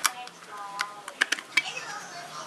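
A handful of sharp clicks from a plastic bronzer compact being handled, one near the start and a quick cluster just past halfway.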